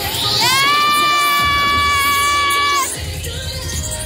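A long, high-pitched scream held on one steady pitch for about two and a half seconds, starting about half a second in and cutting off sharply. It is heard over loud cheer-routine music with a bass beat.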